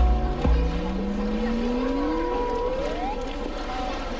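Water sloshing, with a knock or two near the start, as a polar bear pushes a plastic tub around in a pool. Underneath runs a faint steady hum and a thin whine that climbs in pitch over about three seconds and then stops.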